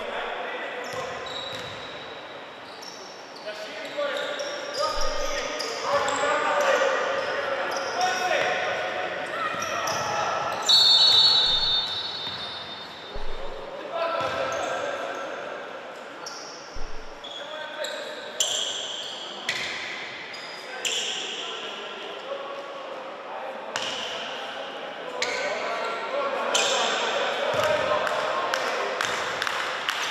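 Sound of a youth basketball game in a large hall: players and spectators calling out, and a basketball bouncing on the court. A short, loud, shrill high tone about eleven seconds in stands out above the rest.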